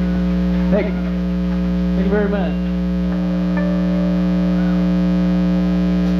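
Loud, steady electrical hum from stage amplifiers, with two brief voice sounds about one and two seconds in.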